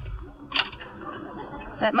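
Radio-drama door sound effect: a single sharp click, like a latch, about half a second in, over a low rumble and the recording's faint steady hum.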